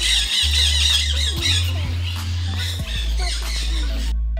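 Background electronic music with a steady bass line. Over it, a dense chorus of many high, wavering bird calls from a flock of water birds, which cuts off abruptly near the end.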